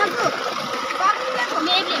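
Boys' voices talking and calling out over the steady rush of water pouring into a small concrete farm water tank.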